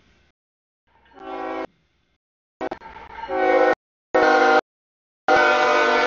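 CSX freight locomotive's air horn blowing the grade-crossing signal in four blasts: long, long, short, long, as the train comes up to the road crossing.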